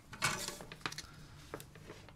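A few faint, light clicks and handling noises as metal tweezers position a thin wire on the drone's flight-controller board.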